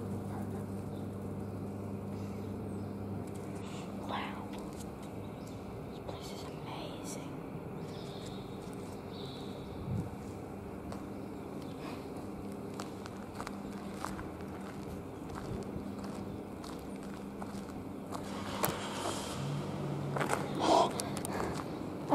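A car engine starting and running steadily, with footsteps on gritty concrete. Low voices come in near the end.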